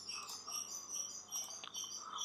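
Faint, irregular high-pitched chirping from small animals in the background. A single soft click comes about three-quarters of the way through.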